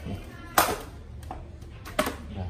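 Power cord plug being pulled out: a single sharp click about half a second in, then a few light knocks from the cord being handled and another click near the end.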